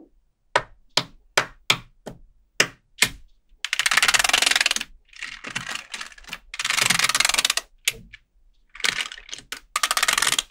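Small neodymium magnet balls clicking as strips of them are snapped together, a sharp click about three times a second at first. Then three spells of about a second each of dense clattering as many balls rattle and snap into rows on the slab.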